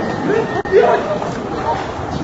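Indistinct voices chattering over a steady bed of outdoor noise.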